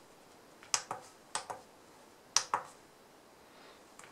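Keypad buttons of a JINHAN JDS2023 handheld oscilloscope clicking under a finger: three quick pairs of clicks about a second apart, as the signal generator's frequency is stepped to 1 MHz.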